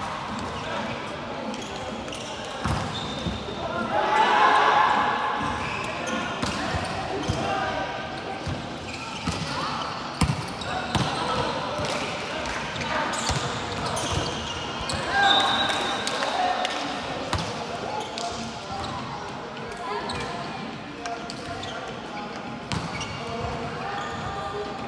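Indoor volleyball play in a large echoing hall: the ball being struck and hitting the floor in scattered sharp smacks, under players' shouted calls, which are loudest about four seconds in and again around fifteen seconds.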